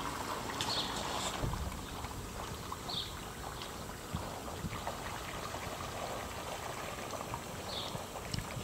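Faint, steady trickling and lapping of water in an above-ground pool, with a few faint short high chirps over it.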